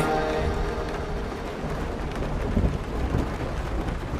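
The song's last chord dies away into a steady crackling, rushing noise with faint low rumbles that slowly fades.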